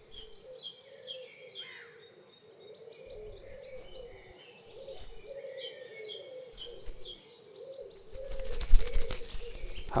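Small garden birds chirping in short high phrases, over a low call that repeats steadily beneath them. Near the end comes a loud run of clicks and rustling.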